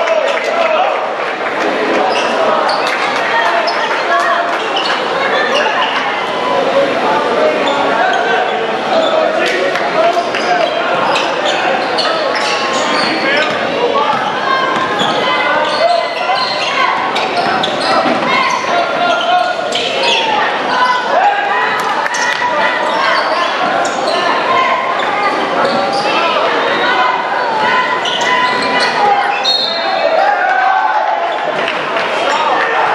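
Basketball game sound in a large gym: indistinct crowd and bench voices echoing, with a basketball bouncing on the hardwood floor and scattered short knocks and squeaks from play.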